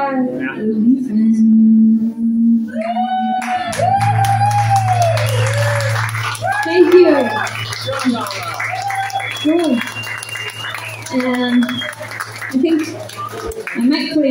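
A held acoustic-guitar chord rings for the first few seconds. Then voices talk over a steady low hum, with scattered clicks and knocks, until the hum cuts off near the end.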